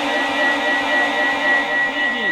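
A long held sung note from a man's voice, carried through a loudspeaker system, wavering slightly in pitch, with a thin steady high-pitched tone ringing beneath it.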